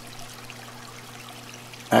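Aquarium water trickling steadily, with a low steady hum underneath.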